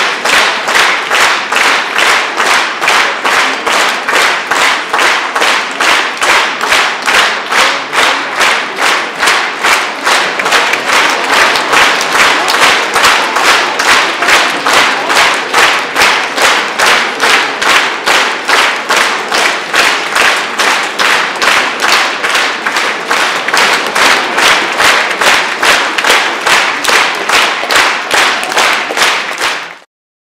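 A concert audience clapping in unison, a steady rhythm of about two and a half claps a second, calling for the performer. It cuts off abruptly just before the end.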